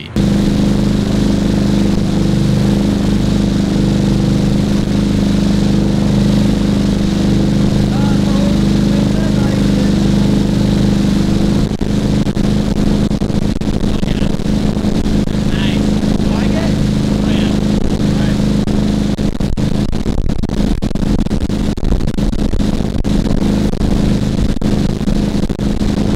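Boat engine running steadily under loud rushing wake water, recorded on a camera-mounted Comica CVM-V30 Lite shotgun mic. About halfway through the sound begins to break up and crackle: the mic is overloaded by the loud engine and water noise and clips badly.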